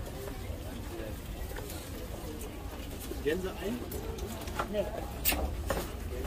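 Indistinct voices of people talking at an outdoor market stall over a low background rumble, with a few sharp clicks near the end.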